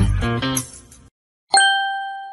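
Intro music with a strong bass line cuts off about a second in. After a short silence, a single bright chime strikes and rings out, fading slowly.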